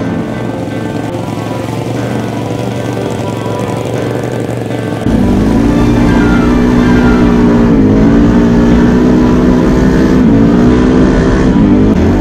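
Background music mixed with an ATV engine running; the sound gets suddenly louder about five seconds in.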